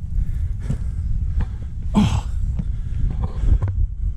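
Boots crunching and slipping on loose railroad ballast stones during a climb up a steep slope, with wind buffeting the microphone throughout. A brief vocal sound about halfway through.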